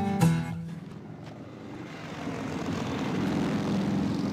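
A guitar chord rings out and stops within the first half-second. Then a steady motorcycle engine rumble grows gradually louder.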